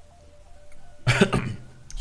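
A man coughs loudly about a second in, over faint background music.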